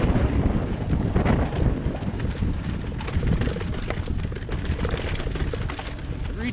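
Mountain bike descending a steep, rough dirt trail at speed, heard from the rider's helmet camera: a constant rumble of tyres and wind on the microphone, with many sharp clicks and rattles from the bike over the rough ground, thickest in the second half.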